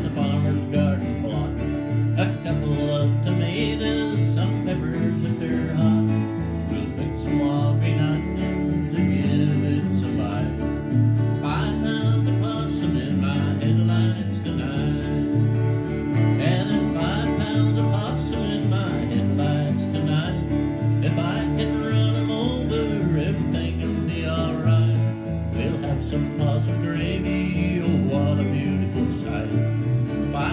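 Small country band playing an instrumental break live: acoustic guitar, electric guitar and electric bass, with the bass notes repeating steadily underneath.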